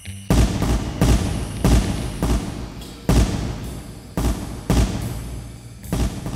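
Gunfire: about eight sharp shots at uneven intervals, each with a short ringing tail.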